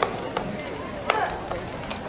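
Baseball infield practice: a handful of sharp cracks of baseballs striking bats and gloves, the loudest about a second in, among players' shouts.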